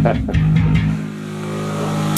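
Amplified electric guitar and bass noodling: a few plucked notes, then a low chord rings for about a second and is choked off suddenly at the end.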